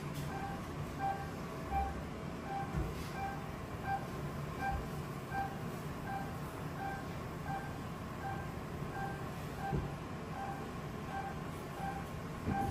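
Electronic beeping: one short tone repeating evenly about every two-thirds of a second, over a low steady hum.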